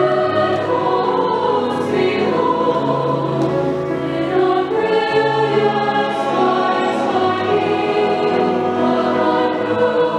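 Large mixed choir singing a slow lullaby in held, sustained chords that shift every second or two, with grand piano accompaniment.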